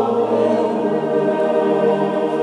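Male-voice choir singing a cappella, holding long sustained chords, with the chord changing just at the start.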